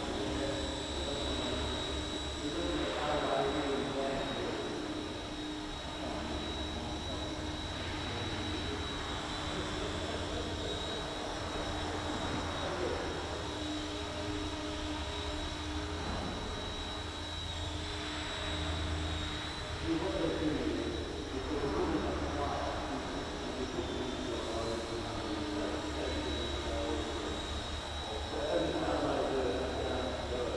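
Eachine E129 micro RC helicopter hovering, its electric motor and spinning rotors giving a steady high whine that dips slightly now and then as it manoeuvres.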